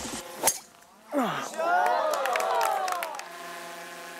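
A golf driver strikes a ball off the tee with one sharp crack about half a second in. A crowd of onlookers follows with a long drawn-out 'whoa' of many overlapping voices, rising and falling.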